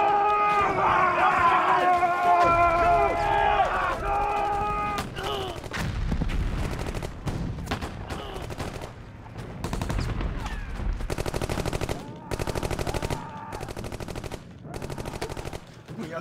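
Battle sound effects: a group of men yelling together for the first few seconds, then scattered rifle shots over low rumbling, and near the end rapid machine-gun fire in several bursts.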